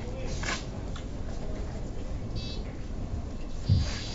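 Billiard shot in a quiet hall: a faint click of the cue striking the ball, then a short high beep or chirp and a dull low thump near the end.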